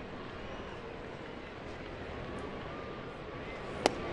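Steady murmur of a ballpark crowd, then near the end one sharp pop of a fastball caught in the catcher's mitt for a called strike three.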